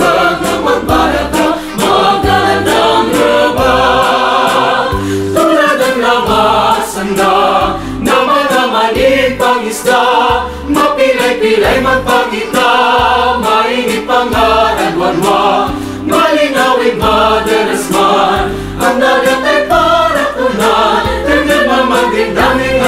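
Mixed choir of men's and women's voices singing a song in harmony, without a break.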